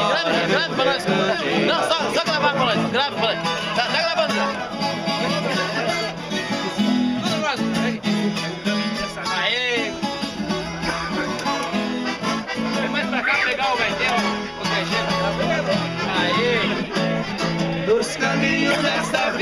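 Live viola caipira (Brazilian ten-string folk guitar) and accompaniment playing an instrumental passage of a caipira country song between sung verses, over sustained low notes, with people's voices in the background.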